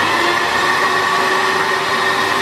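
Magic Bullet personal blender running steadily as its cup of fruit chunks and oats is held pressed onto the motor base: a loud, even whir with a high steady whine.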